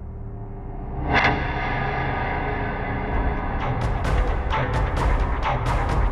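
Dark horror film score music: a low sustained drone, a loud ringing hit about a second in, then from near the four-second mark rapid, sharp percussive hits over a deep pulse, about four a second.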